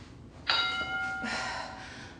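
Interval timer chime: one bell-like tone that starts sharply about half a second in and rings out over about a second and a half. It marks the end of a 50-second work interval.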